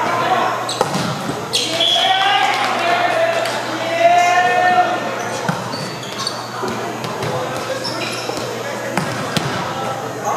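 Echoing gymnasium noise: voices calling out across the hall and scattered sharp thuds of volleyballs bouncing and being hit on the hardwood courts.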